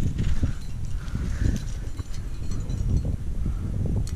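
Rough low rumble of wind and rubbing noise on a head-mounted camera while crack climbing, with the climber's breathing and a few faint clinks of the climbing rack.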